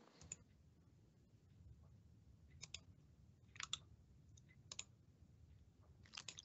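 A few faint computer mouse clicks, several in quick pairs, over near silence.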